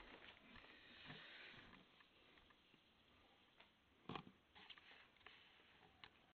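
Near silence: faint room tone, with a few small ticks and one brief soft sound, like a rustle or a sniff, about four seconds in.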